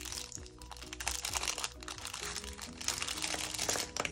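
Thin plastic cellophane bag crinkling and crackling as it is handled and opened, with small pots of glitter taken out of it, over soft background music with sustained notes.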